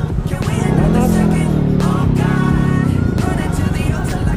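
A motorcycle engine revs up and pulls away, its pitch rising in the first second or so and then holding, under background pop music.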